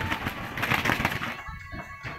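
A held rooster flapping its wings in a struggle, a rapid papery rush that dies away about a second and a half in.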